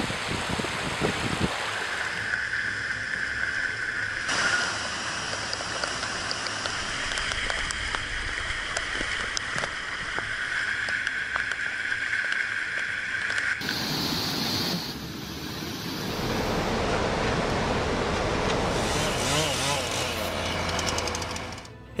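Rushing floodwater: a steady, noisy rush of muddy water through a flooded street and over a riverside embankment. It changes abruptly a couple of times as the sound cuts between recordings.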